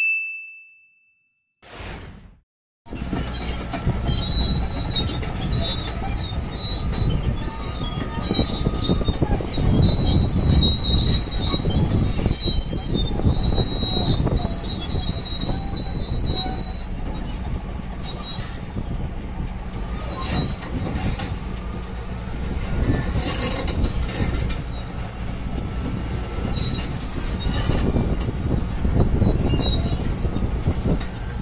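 A notification-style bell ding fading out, then a short whoosh. Then a large crawler bulldozer drives up a trailer ramp: steady engine rumble with its steel tracks squealing and clanking, the high squeal strongest for the first half and briefly again near the end.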